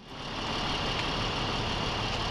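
Fire engine's diesel engine idling steadily, with a faint constant high whine. The sound fades in over the first half second.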